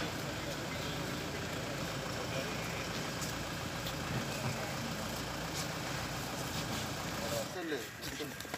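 Vehicle engine idling steadily, with indistinct voices talking over it; the engine sound drops away just before the end.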